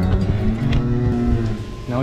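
Dairy cow bellowing in a long, drawn-out call while held in a hoof-trimming chute. It is the bellowing of a scared, nervous cow separated from her herd, not a sign of pain.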